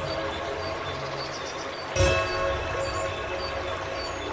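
Slow piano music: a chord rings on and fades, and a new chord is struck about halfway through and left to decay. Under it runs a steady trickle of water from a bamboo water fountain.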